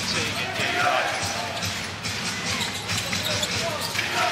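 A basketball being dribbled on a hardwood court, over the steady murmur of an arena crowd.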